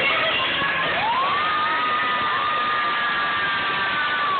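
Female singer performing live into a microphone, scooping up into a long high note about a second in and holding it for most of the rest, over electric keyboard accompaniment, with an audience cheering.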